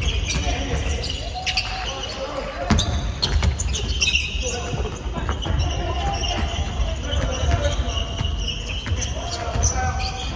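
A basketball bounces on a hardwood gym floor in a run of sharp thuds during a game, with players' indistinct shouts and calls. The sound echoes in a large hall.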